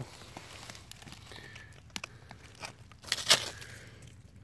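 Rustling and crunching of brush and loose rock as someone moves in close to a rock outcrop, with a few small clicks and one louder scrape about three seconds in.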